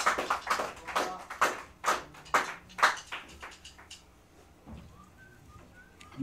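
Scattered hand-clapping from a small audience, irregular and thinning out, dying away about three seconds in.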